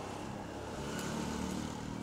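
A motor vehicle's engine running in the street, a faint steady low hum that grows slightly in the middle.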